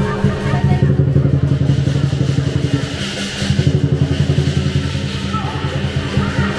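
Chinese lion dance drum beaten in a fast, continuous roll, with cymbals ringing over it.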